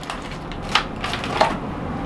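Plastic-wrapped packets crinkling and knocking as hands rummage through a plastic emergency-kit box, with a few sharper crackles.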